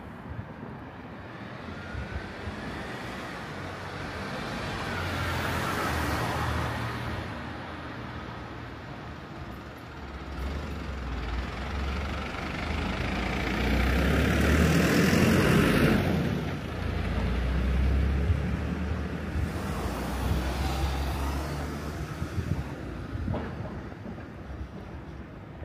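Small trucks and vans driving past close by: engine rumble and tyre noise swell and fade, loudest about halfway through as a box delivery truck goes by.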